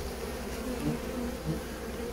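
Honeybees buzzing steadily around a hive entrance that is being robbed, with robber bees fighting the guards at the entrance. Two brief louder buzzes come near the middle.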